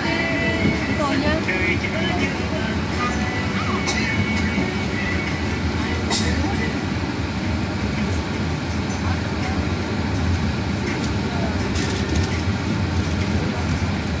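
Passenger train heard from inside the carriage, running with a steady rumble and a few sharp clacks from the wheels and carriage. Voices can be heard faintly in the first couple of seconds.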